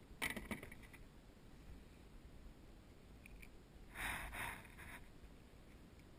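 Handling noises as a small sea bream is lifted out of the water and taken off the hook over a plastic kayak: a quick cluster of knocks and rattles just after the start, then a rush of noise lasting about a second around four seconds in.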